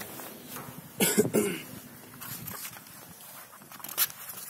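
A person coughing: two quick coughs close together about a second in.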